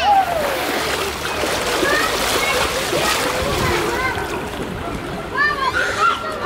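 Pool water splashing and sloshing steadily as small children paddle about in inflatable swim rings, with children's voices over it.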